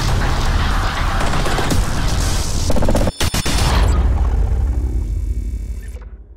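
Cinematic logo-intro sound effect: a loud, dense swell with heavy deep rumble and hiss, cut off sharply for an instant about three seconds in, then fading away at the end.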